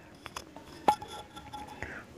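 A pause in a quiet room with a few faint clicks, the clearest about a second in, followed by a faint ringing tone.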